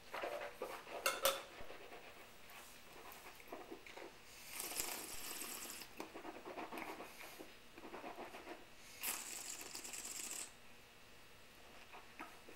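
A wine glass set down on a tiled tabletop with a few sharp clinks about a second in. Then come two hissing slurps, each about a second and a half long, as air is drawn through a mouthful of red wine to aerate it while tasting.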